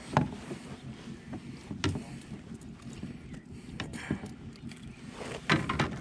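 Scattered clicks and knocks of hands and a landing net working against a kayak as a hooked bass is handled in the net, the sharpest knock just after the start, over a low rumble.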